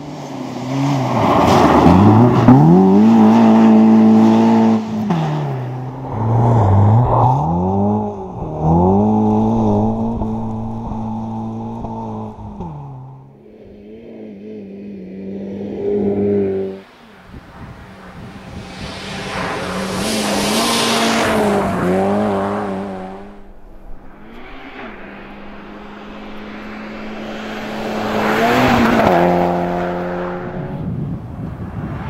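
1.6-litre Renault Clio rally car engine revving hard, the pitch climbing and dropping again and again through gear changes as the car drives a snowy special stage. Later come two loud close passes with a rush of tyre and wind noise. The sound is heard in several short takes with sudden cuts between them.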